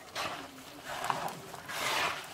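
Hands squeezing and gathering crumbly butter dough with slivered almonds in a plastic bowl: a soft, rustling squish that swells three times.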